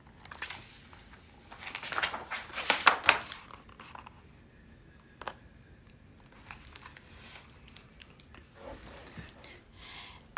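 Pages of a large hardcover picture book being turned and handled: paper rustling, loudest about two to three seconds in, with a single sharp click a little after five seconds.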